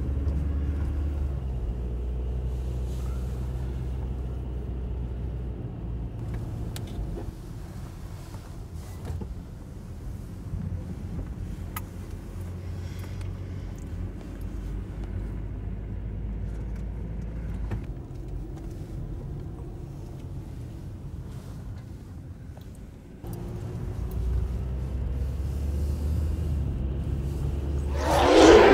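A car driving slowly, heard from inside the cabin: a steady low engine and road rumble that eases off about seven seconds in and picks up again near the end.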